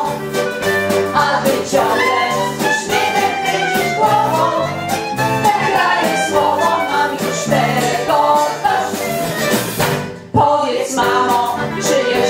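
An older amateur choir, mostly women's voices, singing a Polish song together to an instrumental accompaniment, with a brief break just after ten seconds before the singing resumes.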